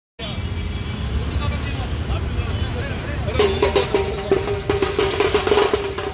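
Outdoor street procession: a noisy crowd and traffic rumble, then about halfway through the procession's music starts up, a steady held note over rapid, sharp drum strikes.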